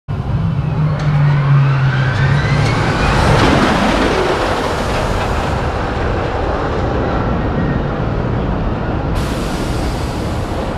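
Launched steel roller coaster (Top Thrill Dragster) train running along the track: a rising whine over the first few seconds, building into a loud, steady rushing rumble.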